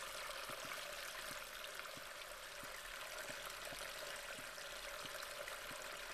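Faint, steady rushing of running water, with light, evenly spaced ticks within it.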